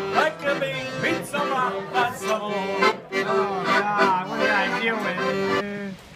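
Piano accordion playing, with steady held chord tones under the tune, and a man's voice going along with it. The music cuts off abruptly just before the end.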